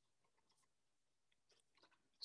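Near silence, with a few very faint scratches of a pen writing on paper, more of them near the end.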